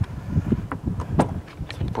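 Wind buffeting the microphone: an uneven low rumble that gusts up and down, with a couple of brief clicks, one about a second in.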